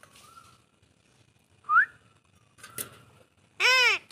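An Alexandrine parakeet calling: a short rising whistle a little under two seconds in, a weaker call about a second later, and a loud rising-and-falling call near the end.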